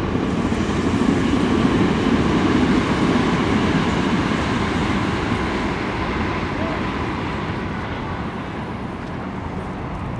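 Low rumble of a passing vehicle, swelling over the first three seconds and then slowly fading.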